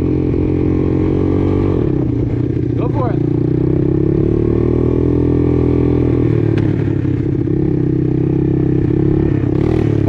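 Engine of a Honda Big Red ATV running under way on a gravel road. Its pitch dips about two seconds in, then climbs again as the throttle is opened.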